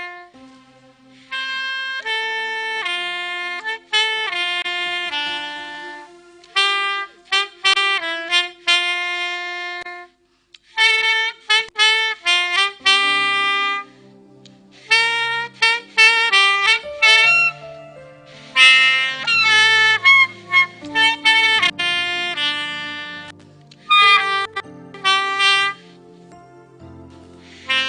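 Saxophone playing a slow solo melody in separate held notes, with a short break about ten seconds in. After the break, lower held accompaniment notes sound underneath the saxophone line.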